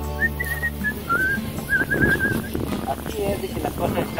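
A series of short, high whistled notes, a few separate ones and then a quick warbling run, over a steady low background tone.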